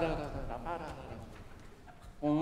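A man's voice trailing off into the hall's reverberation, followed by faint, brief vocal sounds and a low room hush.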